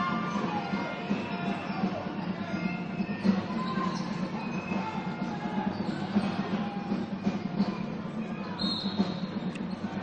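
Music and crowd noise filling an indoor basketball arena during live play, steady throughout.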